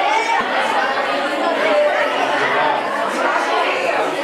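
A roomful of students chattering: many voices talking at once in a large, echoing classroom, with no single voice standing out.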